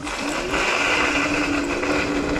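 The dual 1400 W hub motors of a VSETT 10+ electric scooter whining as it pulls away up a hill at full throttle: the pitch rises over the first half second, then holds steady. A steady rushing noise of wind and tyres runs with it.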